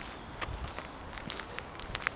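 Footsteps on a dirt-and-gravel surface: a run of short, uneven crunches.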